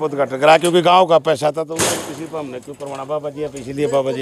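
People talking, with a short burst of hiss about two seconds in.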